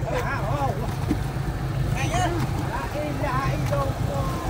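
A boat engine running steadily as a low rumble, with men's voices talking over it.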